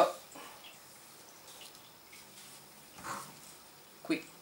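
Quiet room with faint handling noise from hand-sewing a small stuffed cloth head with needle and thread, and one brief soft noise about three seconds in.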